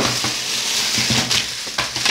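Thin plastic shopping bag rustling as it is tipped out and shaken empty, with a few sharp clicks from wrapped snack packets dropping onto a wooden floor.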